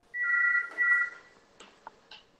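Two short electronic beeps in quick succession in the first second, each made of two steady high tones sounding together, like a phone or device alert, followed by a few faint clicks.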